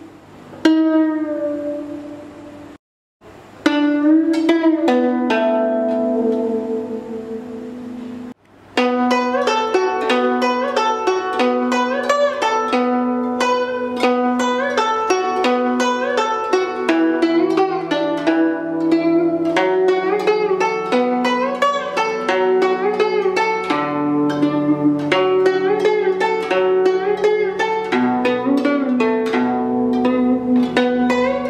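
Guzheng plucked with fingerpicks. First a few single notes bent in pitch, showing the left-hand string-bending technique, with a brief silence about three seconds in. From about eight seconds on comes a continuous melody of quick plucked notes, with lower notes joining past the middle.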